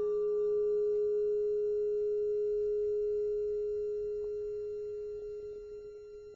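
A struck metal car part ringing out: one clear, steady tone with faint higher overtones that slowly fades away. A few light ticks come near the end.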